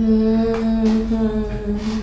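A woman humming one long, nearly level note that sags slightly in pitch toward the end.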